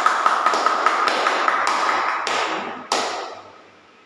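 A small audience clapping in welcome, a dense patter of hand claps that dies away a little after three seconds in.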